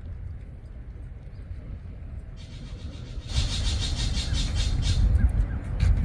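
Wind rumbling on the microphone, growing much stronger about three seconds in. A rapid, evenly pulsing high buzz starts just before and runs through the louder part.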